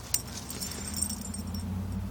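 Dog digging in a mulch bed, its paws scraping and crackling through the wood chips in quick, irregular scratches that die down near the end. A low, steady engine hum, like a vehicle nearby, comes in about half a second in and keeps going.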